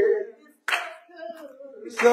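Singing in a church service: a held sung phrase ends, a sharp clap comes about two-thirds of a second in, and the singing starts up again at the very end.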